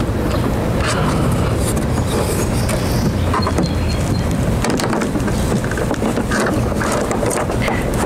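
Steady low rumble of background noise with scattered small clicks and scrapes as a plastic mesh radiator grille is worked into a car's front bumper intake by hand.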